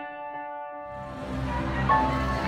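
Soft piano music: a chord struck just before rings on and slowly fades, with another quiet note at about a third of a second and again near the end. A low background hum rises from about a second in.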